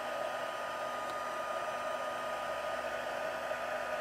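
Stampin' Up! heat embossing tool running steadily, blowing hot air with a faint whine while it melts white embossing powder on cardstock.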